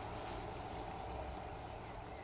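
Quiet, steady outdoor background noise: a low rumble and a faint even hiss, with no distinct sound standing out.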